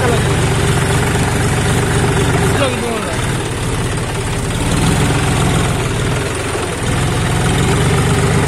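John Deere tractor's diesel engine running as the tractor works through wet paddy-field mud. The engine note dips briefly about three seconds in and again near seven seconds.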